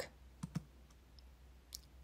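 Very quiet room tone with a faint low hum and a few soft clicks: two close together about half a second in and one more near the end.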